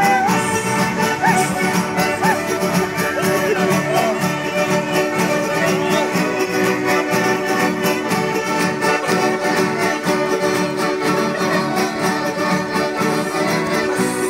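Live Andean folk band playing a sanjuanito on acoustic guitars and violin, at a steady dance tempo.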